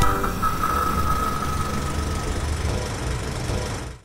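Low rumbling sound effect for an animated logo, with a faint high ringing tone that fades away in the first two seconds. It slowly dies down and cuts off at the very end.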